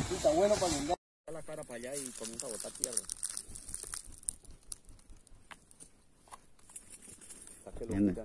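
People talking, cut off abruptly about a second in; after a little more quieter talk, only faint scattered clicks and crackles remain.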